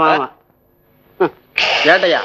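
A man's voice stops after a few words, then after a short pause comes a loud, breathy vocal outburst about a second and a half in.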